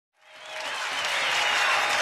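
Studio audience applauding, fading in over the first half second and then holding steady.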